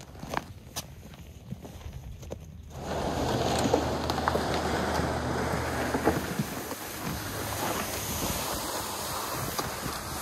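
A few light clicks of handling, then from about three seconds in a steady scraping hiss of a loaded plastic ice-fishing sled being dragged over packed snow, with boot footsteps. A low hum lies under it until about six seconds in.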